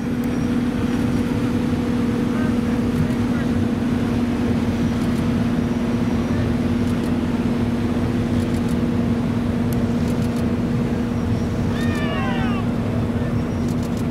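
A boat engine running steadily with an even low hum, over the rush of wind and water.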